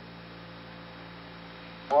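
Steady electrical hum and hiss of the Apollo 11 moon-landing radio transmission, in the pause between phrases of Armstrong's words; a spoken word begins at the very end.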